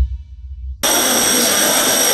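A low rumble fades out, then just under a second in a school bell starts ringing suddenly and steadily: the last bell of the school year.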